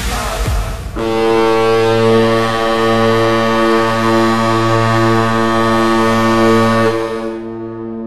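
The last second of the Pittsburgh Steelers' touchdown music cuts off. The San Francisco 49ers' touchdown horn then sounds one long, steady blast of about six seconds, fading over the last second or so.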